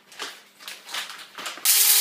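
A few light rattles of whole coffee beans going into a Krups electric coffee grinder. About a second and a half in, the grinder switches on with a sudden loud, steady whir as its blades start grinding the beans.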